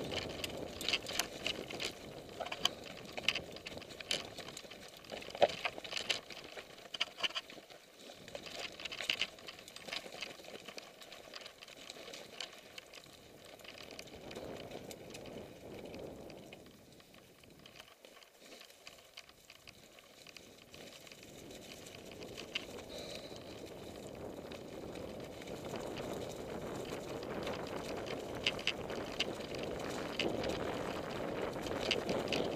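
Mountain bike descending a leaf-covered dirt singletrack: tyres rolling over wet leaves and dirt, with frequent rattling clicks and knocks from the bike over the rough ground in the first ten seconds. It goes quieter around the middle, then a rising rush of tyre and wind noise builds over the last several seconds.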